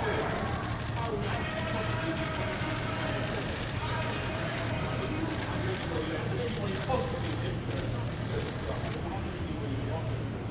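Two men talking indistinctly at a distance, with many quick camera-shutter clicks scattered throughout, over a steady low street hum.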